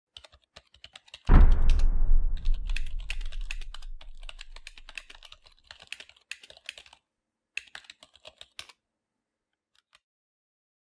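Computer keyboard typing: quick, irregular key clicks that stop shortly before the end. About a second in, a deep boom hits and dies away over about four seconds.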